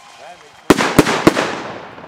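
Fireworks: three loud bangs in quick succession, about a third of a second apart, starting just before midway, with the noise trailing off afterwards.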